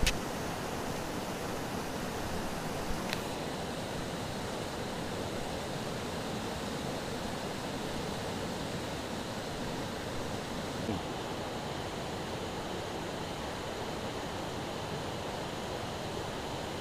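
River rapids rushing over rocks, a steady, unbroken noise of fast-flowing water.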